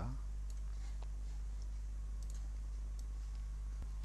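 A few faint, scattered computer mouse clicks over a steady low electrical hum.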